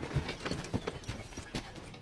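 Footsteps of a group of soldiers jogging over dirt ground, a quiet scatter of irregular thuds.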